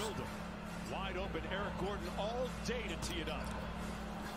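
NBA game TV broadcast audio: commentators talking over the court sound of a basketball being dribbled on the hardwood.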